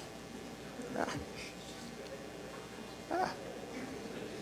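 Low room noise in a hall, with two short, faint voice-like sounds, one about a second in and one near the end.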